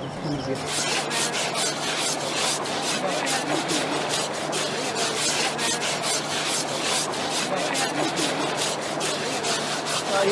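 Repeated rough scrubbing strokes on an elephant's hide as it is scrubbed during its river bath, several strokes a second, starting about half a second in.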